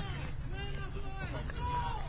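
Indistinct voices talking over a steady low rumble of outdoor ambience.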